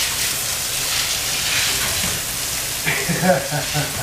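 Steady hiss of water from a garden hose running onto a wet concrete garage floor. A faint voice is heard briefly about three seconds in.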